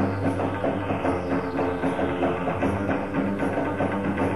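Live band playing upbeat Bollywood dance music, with a drum kit and electric guitars over a steady beat.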